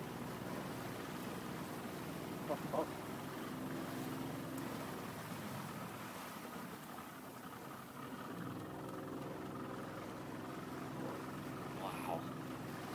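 A small boat's motor running low and steady, with light wind and water noise; the hum eases slightly for a couple of seconds past the middle.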